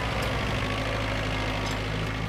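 An engine idling steadily, with a low, even hum.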